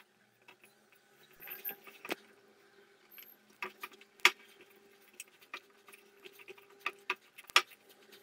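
A hand kneads soft wheat-flour dough in a stainless steel bowl, with scattered sharp metallic clicks and knocks as the fingers and dough strike the bowl. The loudest knocks come about four seconds in and again near the end.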